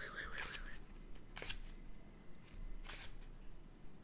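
Pages of a small paper guidebook being leafed through: faint rustling with a few sharp page flicks, the clearest about a second and a half in and again near three seconds.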